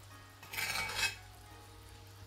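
Metal spoon stirring and scraping through thick, bubbling teriyaki sauce in a cast-iron skillet: one short scrape about half a second in, then only a faint sizzle.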